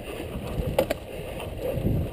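Mountain bike rolling fast down a dirt singletrack: knobby tyres rumbling over packed dirt and small rocks, with wind on the microphone, and a couple of sharp clicks from the bike a little under a second in.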